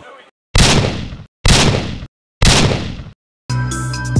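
Three heavy boom impact sound effects, each sharp at the start and fading out over about two-thirds of a second, with dead silence between them. Electronic music with heavy bass comes in near the end.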